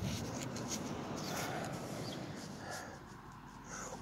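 Close, scratchy rubbing and scraping of loose dirt with a few faint clicks, as soil is dug and handled to uncover a metal detector target. It fades about three seconds in.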